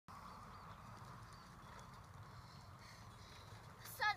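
Near silence: a faint steady low rumble of a bicycle rolling on a tarmac path, with a few faint high chirps in the first second and a half.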